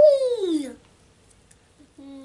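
A toddler's high-pitched drawn-out 'ooh' that slides down in pitch and lasts under a second. A few faint rustles of paper follow as photos are handled.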